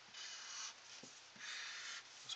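Faint scratch of a Crayola felt-tip marker drawn across paper in two long straight strokes, one starting just after the beginning and the other in the last half-second or so.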